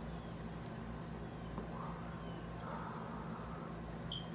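A steady low room hum under the faint breathing of a man smoking a blunt: a soft draw, then a longer, gentle exhale near the middle.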